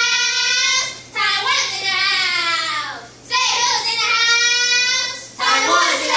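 Children's voices singing together in long held notes, each lasting about two seconds, with a downward glide in pitch between the held phrases.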